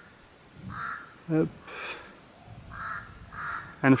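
A bird giving short, harsh, caw-like calls in the surrounding bush: one call about a second in, then two in quick succession near the end.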